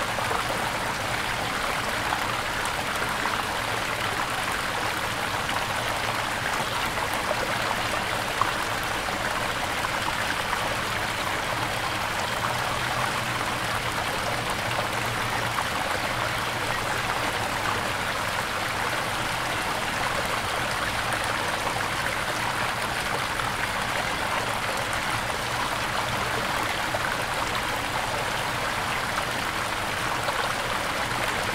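Steady rushing of running water, even and unbroken, with no distinct splashes or other events.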